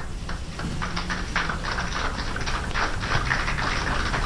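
Scattered applause from a small group: many sharp, irregular hand claps that thicken about a second in, over a low steady hum.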